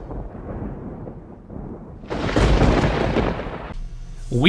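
Thunder sound effect: a low rumble, then a louder, sharper thunderclap about two seconds in that cuts off suddenly near the end.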